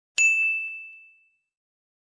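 A single bright notification-bell ding sound effect, struck about a quarter-second in and ringing out over about a second.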